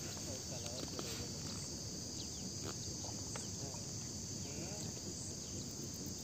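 A steady, high-pitched insect chorus, with a few faint ticks.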